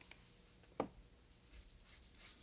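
Quiet room with a single short knock a little under a second in, then faint rustling.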